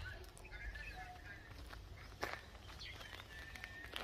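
Birds chirping and twittering against a low outdoor rumble, with a single sharp knock or step about two seconds in.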